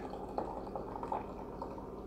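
Faint fizzing and dripping of a freshly poured, very highly carbonated blackberry sour ale in its glass, with a few small ticks.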